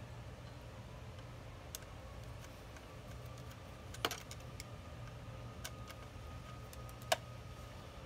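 Light metallic clicks and ticks of an insulated flathead screwdriver working the terminal screws in a pool pump motor's wiring compartment, with two sharper clicks about four and seven seconds in, over a steady low hum.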